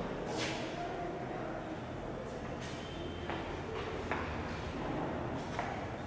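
Footsteps scuffing on a tiled floor, about half a dozen irregular steps, over a low steady background hum.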